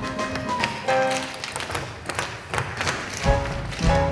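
An ensemble of tap dancers, many tap shoes striking the stage in quick rhythm over instrumental music. The deep bass of the music drops out for most of the stretch and comes back near the end.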